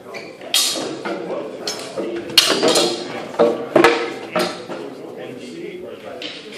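Sparring swords striking against each other and against shields: a flurry of about eight sharp clacks with short ringing tails, the loudest in the middle, stopping about four and a half seconds in.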